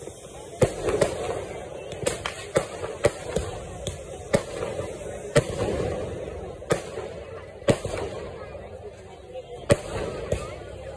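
Aerial sky-shot fireworks launching and bursting overhead: about ten sharp bangs at irregular intervals, from half a second to two seconds apart.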